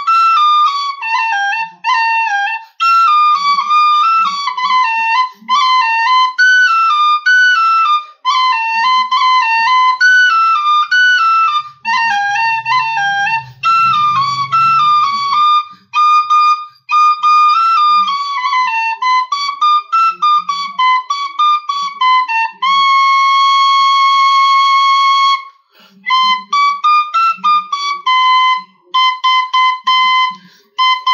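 A D tin whistle plays a lively melody in quick phrases ornamented with rolls. Near the end comes one long held note, then a run of short repeated notes on a single pitch.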